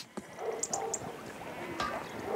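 Quiet background music from an animated cartoon's soundtrack, with three short high chirps about half a second in.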